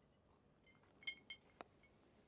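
A few faint clinks of a big ice cube against the side of a rocks glass about a second in, then a single sharp knock as the glass is set down on a wooden countertop.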